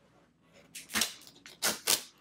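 Duct tape being peeled off a surface in three quick, loud rips: one about a second in and two close together near the end.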